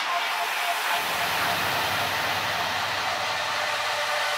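Electronic music passage made of a steady wash of white noise, with a low drone coming in about a second in.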